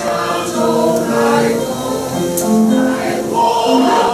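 A mixed church choir of men's and women's voices singing a worship song in parts, moving through a series of held notes.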